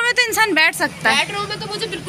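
A high-pitched human voice making wordless, wavering calls in a quick run of short sounds, with the pitch shaking up and down.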